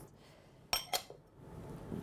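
Two light clinks of glass on a glass mixing bowl just before a second in, as herbs are tipped from a small glass bowl into it.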